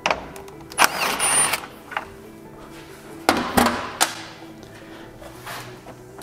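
Milwaukee cordless driver spinning a socket on a 10 mm bolt in short bursts, the motor whining up briefly about a second in, with a few sharp clicks and clunks, over steady background music.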